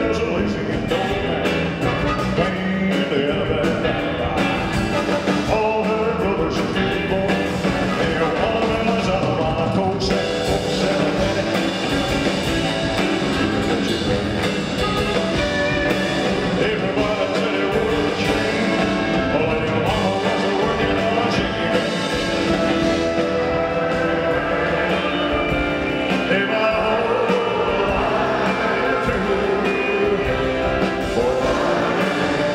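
Rock and roll played by a full band with a male singer, continuous throughout.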